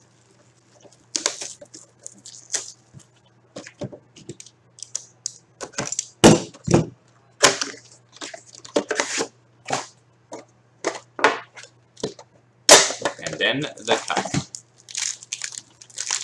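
A cardboard hockey card box being opened by hand: irregular sharp crackles and snaps of the lid and flaps being pried and folded back, busiest about three-quarters of the way through. A low steady hum runs underneath.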